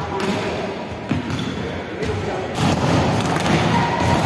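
Balls bouncing and being struck on the floor of a large indoor sports hall, several separate thuds, over the background chatter of players.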